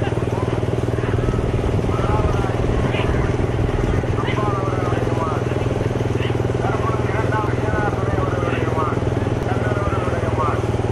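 A motor vehicle engine running steadily at an even speed, with short shouts and calls from men repeated over it throughout.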